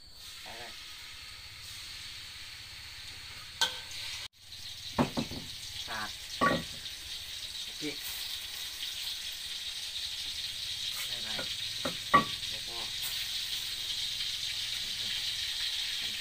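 Pieces of pork frying in oil in a wok, a steady sizzle that grows louder, with a few sharp knocks along the way. The sizzle breaks off for a moment about four seconds in.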